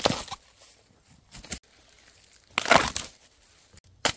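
Bamboo shoots being snapped off by hand. There is a sharp crack at the start, a small crackle in between, and a louder, longer crunching break a little before three seconds in.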